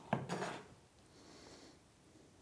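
A knife scrapes diced tomato off a wooden cutting board into a glass bowl: a sharp knock, then a short scrape during the first half second, then only faint room tone.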